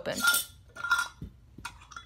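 A metal screw lid being twisted off a small glass jar: two short grating scrapes of metal on glass with a faint metallic ring, then a light click.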